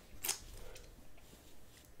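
Quiet room tone with one brief, soft noise about a quarter of a second in.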